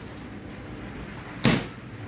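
A single sharp clatter about one and a half seconds in, as kitchenware is knocked about in a crockery cabinet while a strainer is taken out, with a quiet low background before it.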